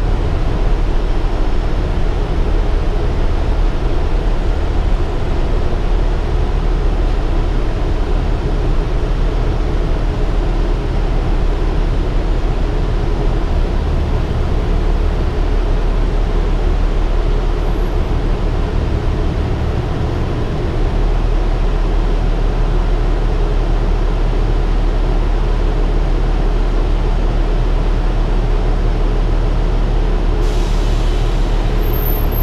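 Interior ride noise of a 2015 Gillig Advantage transit bus under way: steady engine and road rumble. The deepest part of the drone fades briefly about two-thirds of the way through, then returns stronger.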